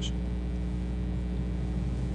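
Steady low electrical hum with faint hiss from the room's sound system.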